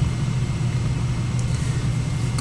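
A steady low hum throughout, from an unidentified source, with faint scratching of a felt-tip marker writing on paper.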